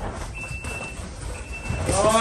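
Electronic boxing round timer beeping: a high, steady tone, each beep about half a second long, repeating about once a second.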